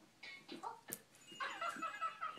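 Short, high-pitched, wavering vocal sounds, a few brief ones and then a longer one in the second half, with a single sharp click about a second in.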